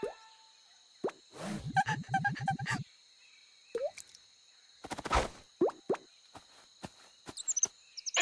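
A string of short cartoon sound effects: plops and clicks, with a rapid rattling run of pulses about one and a half seconds in and a heavier hit about five seconds in.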